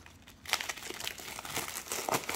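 Grey plastic mailer bag crinkling and rustling as it is handled and unwrapped, starting about half a second in.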